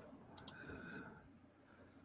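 Near silence with two faint, quick clicks about half a second in, then low room tone.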